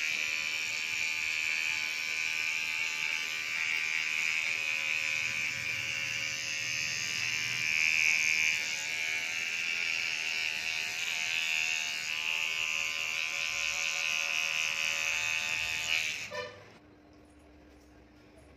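Electric hair clipper buzzing steadily as it trims hair at the nape, then switching off near the end.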